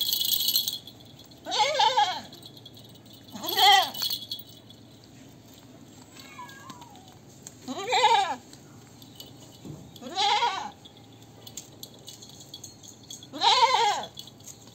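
A goat bleating five times, each a short wavering call spaced a few seconds apart. A brief hissing rasp comes at the very start.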